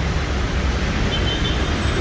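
Steady city road traffic: an even rumble of passing cars, with a faint high-pitched tone in the last second.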